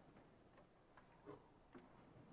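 Near silence with a few faint knocks and clicks as a Torah scroll is handled and lifted out of a wooden ark cabinet.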